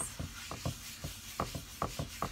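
Paper towel rubbed quickly back and forth over a wooden cutting board, a run of short, uneven wiping strokes.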